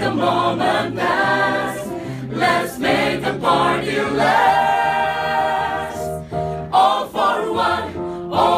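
A mixed choir of men and women singing an upbeat pop song together, holding one long note about midway through.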